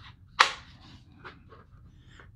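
Hard plastic rifle magazines handled against each other: one sharp click about half a second in, then a few faint taps and rubbing.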